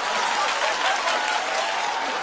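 Studio audience applauding: many hands clapping in a steady patter that eases off slightly toward the end.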